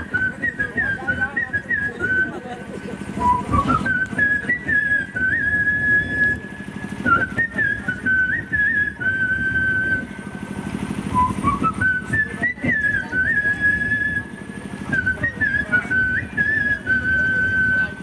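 A man whistling a folk melody by mouth into a microphone: long high notes held with wavering ornaments, and a new phrase sliding up into the high note about three seconds in and again about eleven seconds in.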